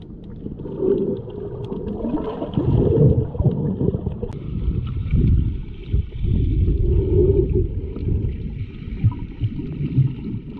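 Muffled underwater sloshing and rumbling of water moving against a submerged GoPro, swelling and fading in uneven surges, with occasional gurgles.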